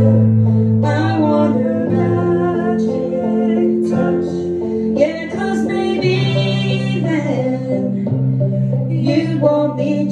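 A woman singing a harmony vocal line while strumming chords on an acoustic guitar, with the notes held and sliding between words.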